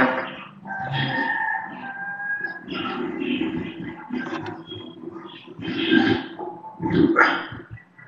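A voice over a video call, sounding out words haltingly in short broken stretches with some long drawn-out sounds.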